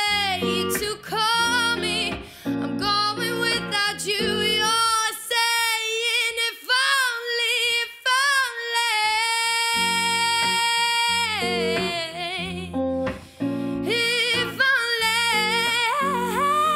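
Live song with a woman singing vocal runs over guitar. The guitar drops out about five seconds in while her voice carries on alone and holds one long note, then comes back in near eleven seconds.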